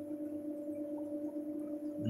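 Steady electrical hum from running reef-aquarium equipment, made of two unchanging tones.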